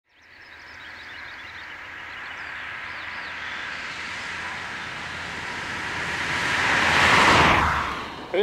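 A car on a country road coming closer, its engine and tyre noise fading in from silence, swelling steadily to a peak about seven seconds in, then dropping away.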